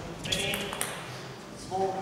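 Table tennis ball struck back and forth in a fast rally, a few sharp clicks off the bats and table in the first second. Near the end a short shout as the point ends.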